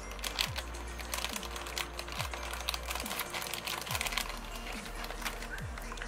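Background music with a low drum beat about every two seconds, over the crinkling and small clicks of a clear plastic bag of nail brushes being handled and opened.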